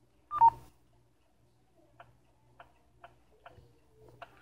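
Uniden Home Patrol-1 scanner's touchscreen key beep, a loud falling two-note beep about half a second in as Accept is pressed, followed by four short, soft ticks about half a second apart as the menus are tapped through.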